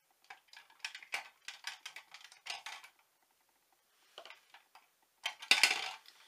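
Small plastic cosmetic containers and tubes clicking and rattling as they are sorted through and handled, with a louder clatter near the end.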